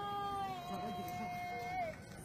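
A long wailing call held on one steady pitch for nearly two seconds, sliding down as it ends.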